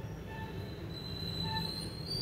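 Puffed rice (muri) rustling as a hand tosses and mixes it in a steel bowl. A thin high whine comes in about halfway and rises slightly, and faint short tones repeat about twice a second.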